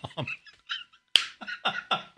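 A man laughing in a string of short, quick bursts, with a sharp click about a second in.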